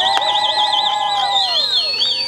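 Several whistles blown at once by a rally crowd. A high whistle warbles rapidly, about six times a second, over steadier lower whistle tones that fall away near the end.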